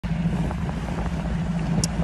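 A bass boat's outboard motor running with a steady low drone, with wind noise on the microphone.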